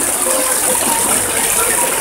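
Shallow river running over stones: a steady rush of water.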